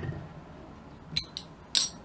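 Small thin metal can-badge parts clinking twice as they are handled and set down, the first with a brief ringing tone about a second in, the second a sharper click near the end.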